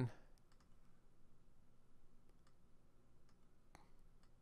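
Faint computer mouse clicks, a few scattered sparse clicks over low room tone, with a slightly stronger click near the end.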